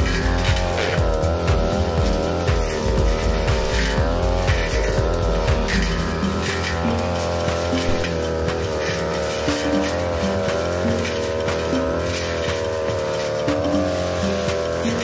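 Backpack brush cutter's engine running at high speed, its pitch dipping and recovering again and again as the 45 cm blade cuts through young grass.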